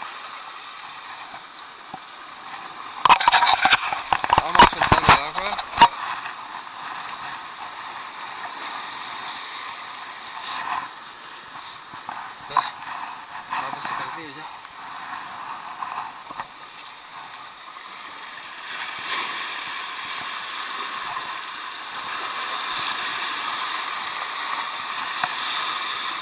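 Sea surf washing over shore rocks as a steady rushing hiss, with a burst of loud sharp knocks and rubbing about three to six seconds in from the fish being handled close to the camera.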